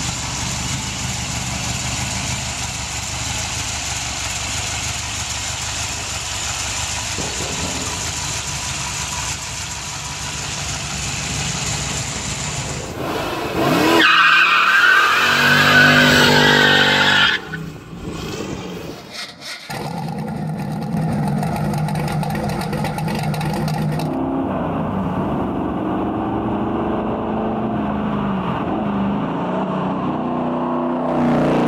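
Callaway Sledgehammer C4 Corvette's turbocharged 5.7-litre V8 running steadily, then revving hard with tyre squeal about halfway through as it spins its rear tyre. After a break, a De Tomaso Pantera GT5's 5.8-litre V8 revs up and down as the car drives toward the listener.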